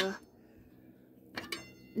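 Two quick metallic clinks with a short ring about one and a half seconds in, from the lid of a metal kettle being handled while checking whether the water on the wood fire has boiled.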